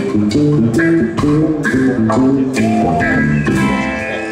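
Live reggae band playing an instrumental passage with no singing: a bass guitar line and electric guitar over a steady drum beat.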